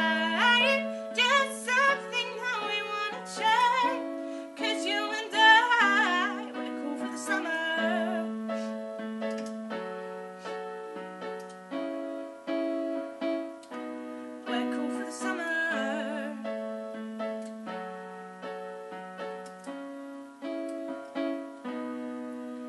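A keyboard piano plays a steady accompaniment of repeated chords over a low alternating bass note. A woman's voice sings wavering, drawn-out vowel runs over it for the first several seconds and briefly again midway; the piano carries on alone in between.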